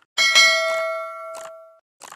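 A short click, then a bright metallic bell ding that rings and fades out over about a second and a half, with another click partway through. It is the sound effect of an animated subscribe button and notification bell.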